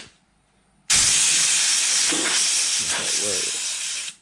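Compressed-air blow gun blasting air over an engine's gear and shaft: a loud, steady hiss that starts suddenly about a second in and tapers slightly as it goes. The air compressor is switched off, so the gun is running on tank air alone.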